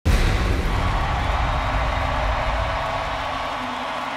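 Live arena concert sound: a crowd cheering over a deep rumble that starts suddenly and fades over the next few seconds.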